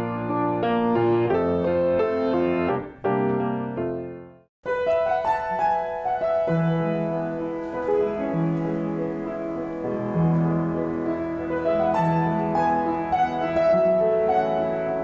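Piano music that fades out about four seconds in; after a brief silence a Yamaha upright piano starts playing a melody over sustained bass notes.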